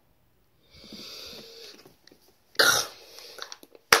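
A boy blowing out breathy hisses through his mouth as he reacts to the sourness of a Warheads candy: a soft hiss about a second in, then a louder, cough-like burst of breath about two and a half seconds in. A short click comes near the end.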